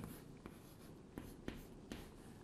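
Chalk writing on a chalkboard: faint scratching with four short taps as the strokes land, the loudest about a second and a half in.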